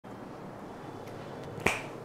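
A single sharp finger snap about one and a half seconds in, over faint room tone.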